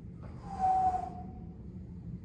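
A deep breath out: one loud, breathy exhale about half a second in that lasts under a second, over a steady low room hum.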